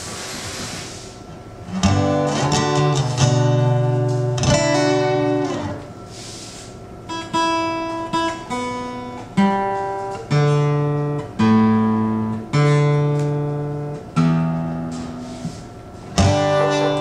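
Acoustic guitar: a few strummed chords, then notes plucked one at a time about once a second, each left to ring. A short hiss comes before the guitar starts.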